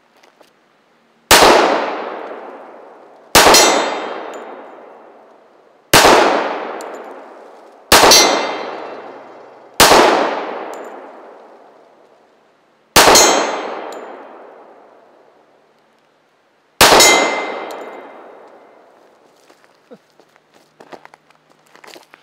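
Seven shots from a Taylor's 1911 pistol fired at a slow, uneven pace, each one echoing and dying away over a second or two. After several of the shots a steel target plate rings as it is hit.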